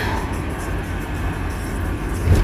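Steady low road and engine rumble heard inside a moving car's cabin, with music faintly underneath.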